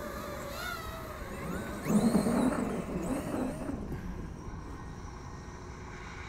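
Traxxas XRT RC monster truck's brushless electric motor whining, its pitch rising and falling with the throttle, with a louder rush of tyres on sand and grass about two seconds in. The sound fades as the truck drives off into the distance.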